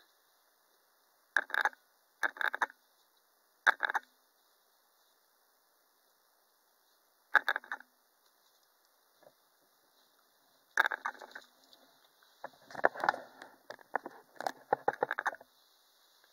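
Handling noises of a blank vinyl reborn doll kit: a few separate short knocks and rubs, seconds apart, as the doll head is turned in the hands, then a denser run of handling noise near the end as the kit parts are laid out.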